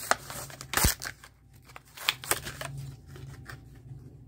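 A Hot Wheels blister pack being cracked open by hand: a sharp plastic snap just under a second in, then a run of crackling and clicking of plastic and card.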